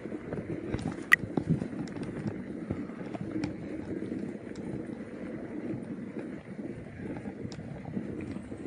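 Mountain bike rolling over a rough dirt trail: steady tyre noise on the gravel with scattered small rattles and clicks from the bike, and one sharp click about a second in.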